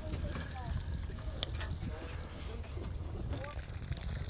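Steady low rumble of a charter fishing boat's engine running, with faint voices of other anglers over it.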